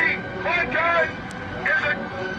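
A man's voice shouting through a megaphone in short phrases with brief gaps, the words hard to make out.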